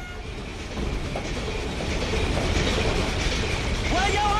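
U-boat engine-room din from a film soundtrack: the submarine's diesel engines running with a dense, clattering noise that grows louder over the first two seconds, as the compartment is entered, then holds steady.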